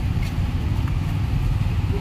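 Steady low rumble of idling vehicle engines and street traffic.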